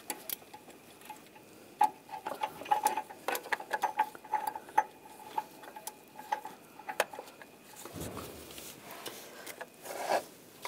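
A slotted 22 mm O2 sensor socket and ratchet being fitted onto an upstream oxygen sensor: a run of quick metal clicks and clinks with a faint ring, densest in the middle seconds, then a soft rub near the end.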